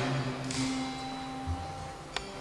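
A long held musical note ringing in a reverberant church, dying away about one and a half seconds in with a soft thump.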